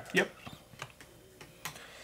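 Plastic miniatures being picked up and set down on a cardboard game board: a few light, scattered clicks and taps.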